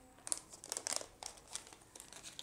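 Crinkling of an ovulation test kit's sealed wrapper as it is torn open and handled: a run of short, irregular crackles.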